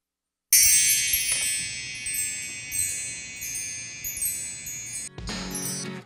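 Mark tree (hanging metal bar chimes) swept by hand about half a second in: a shimmering cascade of many high ringing tones that fades away over about four and a half seconds, cut off near the end.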